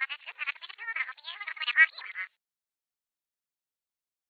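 A fast, stuttering run of short, squeaky, quack-like squawks, several a second, that breaks off a little after two seconds in.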